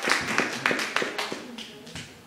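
Small audience applauding, the clapping thinning to a few scattered claps and fading out in the second half.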